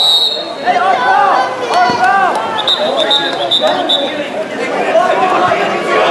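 Voices of spectators and players shouting and calling over one another at a water polo game. Short high whistle blasts cut through: one brief blast at the start, then a quick run of several about two and a half to four seconds in.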